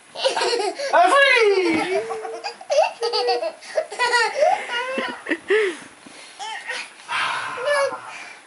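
Two-year-old toddler laughing hard, a long run of belly laughs one after another.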